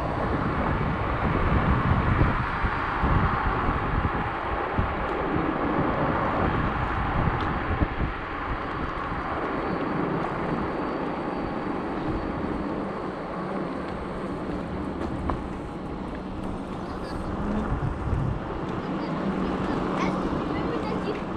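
Steady wind rush on the microphone and tyre noise on asphalt from a Teverun Fighter Supreme 7260R electric scooter riding along.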